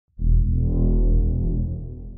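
Electronic music sting for a channel logo intro: a deep, low-pitched hit that starts suddenly and slowly fades away.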